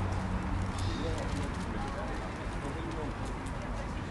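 Indistinct chatter of passers-by over a steady low city hum, with a few light clicks, like footsteps on paving, in the first couple of seconds.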